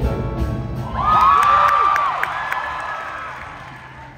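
A show choir and its live band finish a song: about a second in, a loud final sung note rises over the music along with high whoops and cheering, and the sound then fades away.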